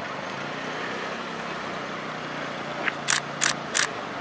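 Outdoor street ambience with a faint steady low hum of idling traffic, then four short sharp bursts of noise near the end.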